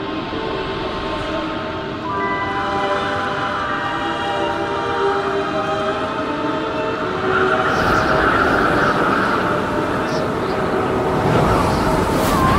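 Cinematic soundtrack of held, horn-like chords over a rushing noise that swells about seven and a half seconds in.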